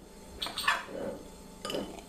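Metal bottle opener clinking and scraping against a beer bottle's crown cap as it is worked on: a few short clicks about half a second in and again near the end.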